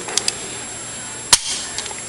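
A single sharp metallic click about a second and a half in, after a couple of faint ticks: the hammer of an unloaded Colt .45 pistol snapping forward as the trigger is pulled, a dry fire.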